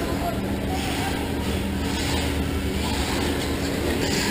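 Stock Traxxas Slash electric RC trucks running around an indoor dirt track, heard as a steady, even mix of motor and tyre noise in a large hall, with a low steady hum underneath.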